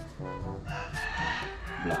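A rooster crowing: one long call of about a second that falls slightly at the end, over faint background music.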